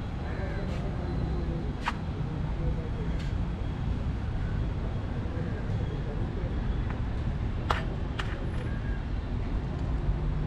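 Street ambience: a steady low traffic rumble with faint voices in the background, and a few sharp clicks, one about two seconds in and two close together near the end.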